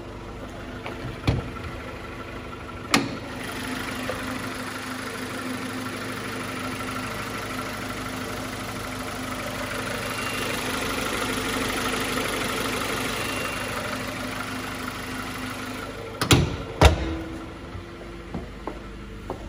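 Honda B20B 2.0-litre four-cylinder engine idling steadily, louder around the middle as it is heard close up in the open engine bay. A few sharp knocks cut in, the loudest two close together near the end.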